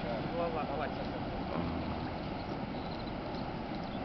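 Steady rushing outdoor background noise, with faint distant voices in the first second.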